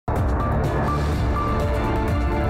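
Television news intro theme music that starts suddenly at the very beginning, with deep bass and held notes.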